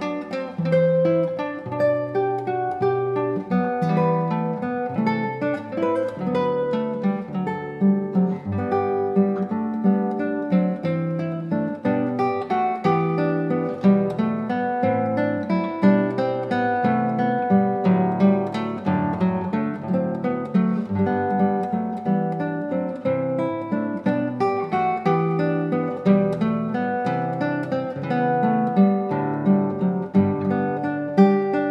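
Solo classical nylon-string guitar played fingerstyle: a continuous stream of plucked notes over a bass line, in a classical piece arranged for guitar.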